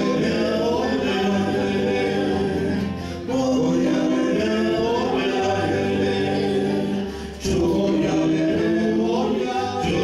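Live folk song: several male voices singing together in Spanish over acoustic guitars, in phrases broken by short breaths about three and seven seconds in.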